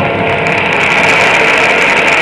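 Audience applause in an ice arena, loud and steady, as the skater's music ends.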